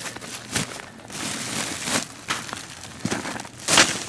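Soil-filled sample bags being handled over rocky ground: uneven crinkling and rustling with scattered clicks, and a louder burst near the end.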